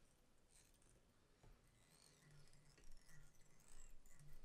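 Near silence, with faint scratchy, squeaky handling sounds of tying thread being wrapped around a hook held in a fly-tying vise, mostly in the second half.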